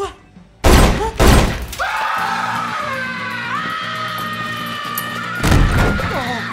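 Two loud gunshots about half a second apart, right after the warning that it will be loud. A long high wail follows, holding for about four seconds and stepping up in pitch partway, and another loud bang comes near the end.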